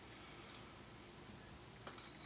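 Near silence: room tone with two faint light taps, from banana slices being placed by hand onto muesli in a ceramic bowl.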